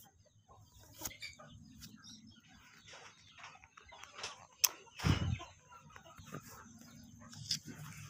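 Domestic chickens clucking on and off in a yard. About four and a half seconds in there is a sharp click, followed at once by a brief low thump.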